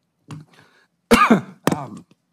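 A man coughing and clearing his throat: a light burst first, then two strong ones about a second in and near the end.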